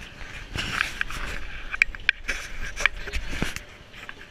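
Busy shopping-mall crowd ambience, a steady murmur of voices and footsteps in a large echoing hall, overlaid by rubbing and several sharp knocks from handling of a hand-held camera as it is turned and carried.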